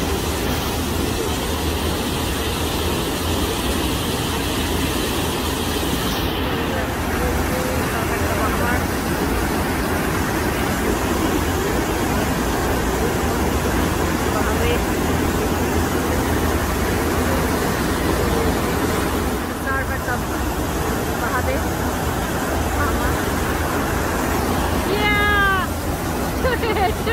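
Steady rush of water jetted up the FlowRider surf simulator's sheet wave, with a low rumble beneath it. Faint voices come through the water noise, and a short high-pitched cry sounds near the end.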